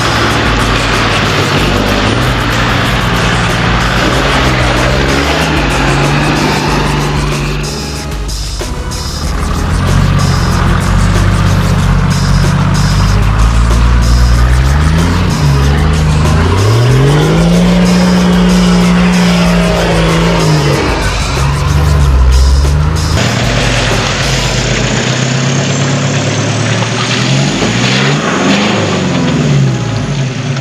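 Four-wheel-drive engines revving up and down as off-road utes crawl through a creek bed, climb out of a mud hole and over a sandy ledge, in a few short cuts, with music underneath.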